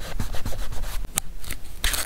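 Fingers rubbing and sliding over paper on a journal page: a quick run of short scratchy strokes, a sharp tick about a second in, and a louder rustle near the end.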